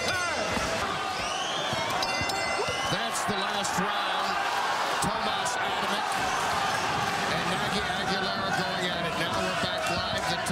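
Boxing arena crowd noise, a steady mix of voices and shouts. A ring bell clangs briefly twice, at the very start and again about two seconds in, signalling the start of the round.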